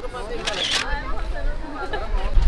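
Phone camera shutter sound from a selfie, once, about half a second in, over background voices.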